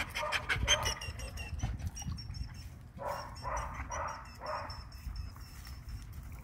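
Wolfdogs vocalizing with short whines and grumbles, in a bunch near the start and again about three seconds in.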